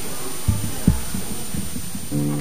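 Several short, dull low thumps, the strongest about half a second in and just under a second in, over a steady background hiss.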